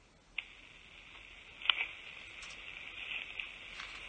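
A phone-in caller's line opening on air: a click, then a faint steady thin hiss of line noise with a couple of soft clicks, and no voice yet.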